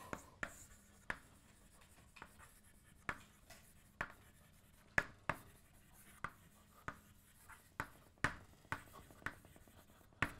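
Chalk writing on a blackboard: irregular sharp taps and short scratchy strokes, one or two a second, as words are chalked out.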